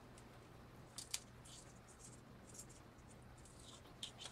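Small scissors snipping a leafy tomato stem: two sharp snips close together about a second in, then faint rustling of leaves, over a steady low hum.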